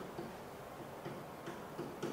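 Pen tip tapping and ticking against an interactive whiteboard as words are handwritten on it: a series of light, irregular clicks.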